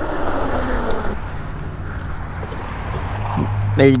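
Riding noise from an electric pit bike on a dirt road: a steady rush of wind on the camera and knobby tyres rolling over dirt, with a steady low hum coming in about three seconds in as the bike pulls up.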